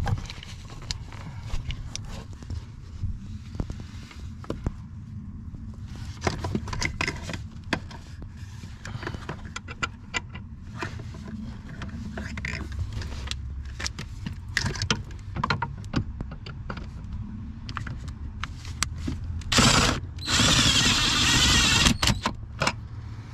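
Small clicks and knocks of a hand fitting bolts up under the dash, then near the end a cordless drill runs in a short burst and then for about two seconds, driving in a bolt that holds the new hydroboost brake booster to the firewall.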